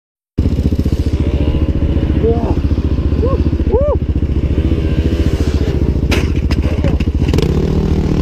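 Dirt bike engine running close up, with rapid steady firing pulses. Short rising-and-falling shouted calls come a couple of seconds in, and a few sharp knocks or clatters follow about six to seven seconds in.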